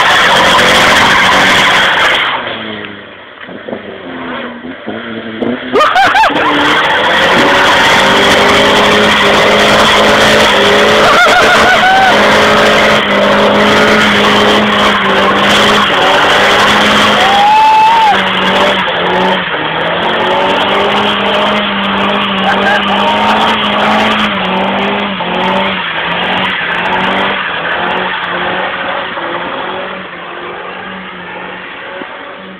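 Mitsubishi Mirage doing a burnout: the engine held at high revs while the spinning tyres squeal against the road. The engine backs off briefly a few seconds in, then holds high revs again, easing in level near the end.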